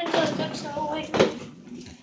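A voice trailing off, with a single sharp knock of cookware at the stove about a second in.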